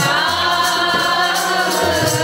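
Group kirtan: many voices sing a long held note together over harmonium, with tabla strokes underneath.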